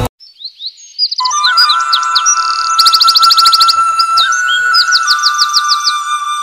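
Birdsong: quick high chirps and fast trills, over a sustained synthesizer-like tone that comes in about a second in.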